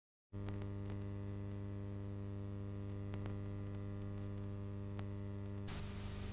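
Steady electrical mains hum with a buzzing ladder of overtones, cutting in suddenly just after the start, on the audio of a VHS tape being played back, with a few faint clicks. Near the end a hiss of tape noise rises over the hum.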